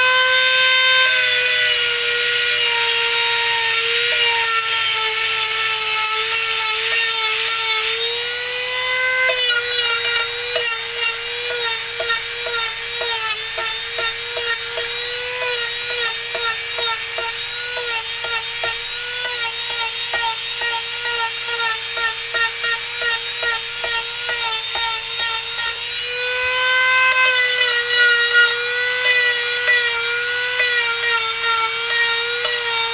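Dremel rotary tool running at high speed with a sanding bit on carved wood: a steady high whine that wavers and dips in pitch as the bit is pressed into the wood, with a quicker rhythmic wobble through the long middle stretch.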